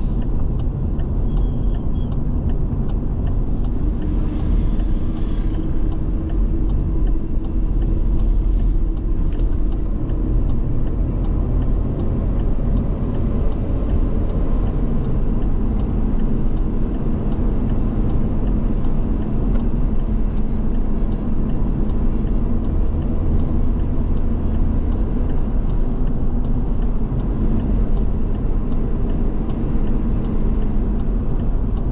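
Car driving along a paved road, heard from inside the cabin: steady engine and tyre rumble, with a brief hiss about four seconds in.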